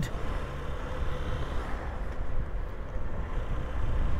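Honda CB125F's single-cylinder four-stroke engine running steadily as the motorcycle rides along a road, mixed with a low rumble of road and wind noise.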